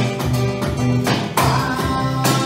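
A nylon-string acoustic guitar strummed together with an electronic drum kit keeping a steady beat, a live two-man band performance.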